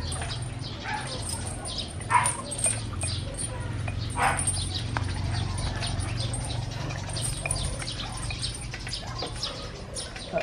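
Small birds chirping again and again over a steady low hum, with a couple of louder short sounds about two and four seconds in.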